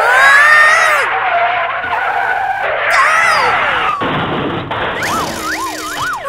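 Cartoon sound effects: a long, loud tyre screech of a skidding car, with whistling pitch slides through it. Near the end come wobbling up-and-down whistle glides, a cartoon dizziness effect.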